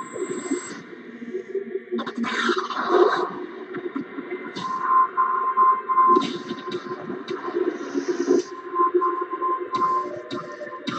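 Movie trailer soundtrack played back over speakers: dramatic music with sudden explosion hits.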